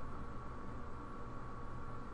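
Steady background hiss with a low hum and a faint steady high whine: the recording's own noise floor, with no other sound.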